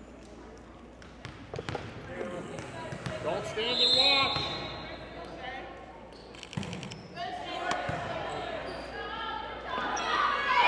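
Volleyball players calling out and shouting in a reverberant gym, with sharp knocks of the volleyball about one and a half seconds in and again around six and a half seconds, where the serve is struck.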